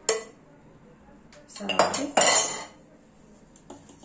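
Kitchen utensils and a glass clinking and scraping against a stainless steel mixing bowl, with a sharp click at the start and a louder clatter about two seconds in.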